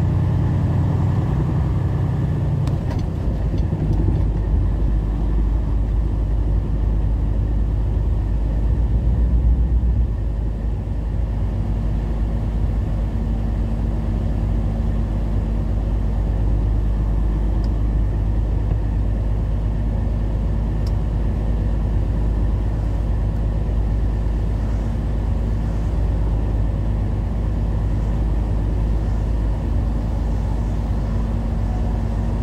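Heavy truck engine running at road speed with tyre noise on a wet road, heard from inside the cab: a steady low drone that changes in pitch about ten seconds in.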